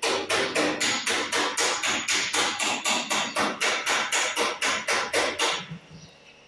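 A fast, even run of sharp knocks like hammer blows, about four a second, stopping shortly before the end.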